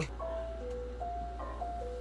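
A sparse electronic melody of single held notes, about five in two seconds, playing back quietly from the beat being built for a rap song.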